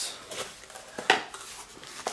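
A small cardboard box being handled and opened: a few short knocks and scrapes of cardboard, the loudest about a second in.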